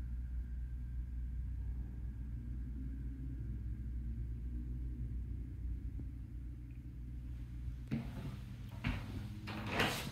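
Low, steady rumble from a handheld camera being carried through a small room, with a few short rustling, knocking handling noises near the end.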